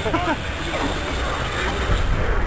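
A few brief words from people, over a steady low rumble.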